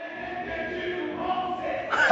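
A choir singing, several voices holding long steady notes together.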